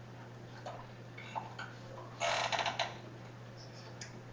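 Lecture-room background noise: scattered faint clicks and a brief louder clattering burst a little over two seconds in, over a steady low hum.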